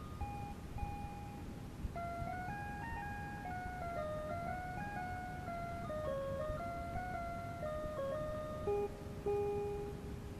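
Casio MT-100 home keyboard playing a slow melody of held electronic tones, with two voices moving in parallel and a long low note near the end. A steady background noise from an old cassette recording runs underneath.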